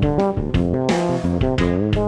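Fretless electric bass played melodically, with notes sliding up and down in pitch between plucked notes.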